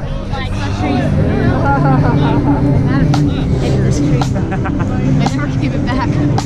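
Several people chatting nearby over a continuous low street hum, with a few short clicks.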